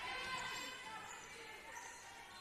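Indoor basketball game sound during live play: a ball bouncing on the hardwood court under faint crowd noise in the hall, growing slightly quieter.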